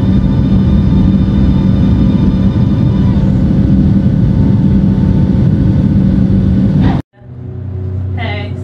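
Airliner cabin noise from a passenger seat: the jet's engines and airflow make a loud, steady roar with a deep rumble and a steady hum. It cuts off suddenly about seven seconds in, giving way to a much quieter steady low hum.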